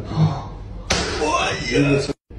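A mallet strikes a wooden peg held against a man's back: one sharp knock about a second in, with a man's voice crying out and talking around it.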